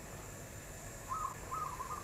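Caramelised sugar and soy sauce bubbling steadily in a pot over low heat. In the second half come a few faint, short hoot-like calls.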